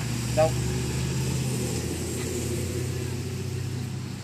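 Steady low hum of a motor vehicle's engine running near the street, easing off near the end.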